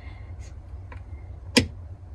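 A round lighted rocker switch snaps over once with a sharp click about a second and a half in, against a faint low hum.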